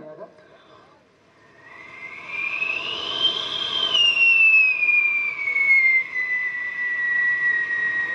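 A mimicry artist makes a whistling sound effect with his mouth into a microphone, like a passing jet plane. The tone starts about a second and a half in, rises in pitch, then glides slowly down and levels off into a steady whistle.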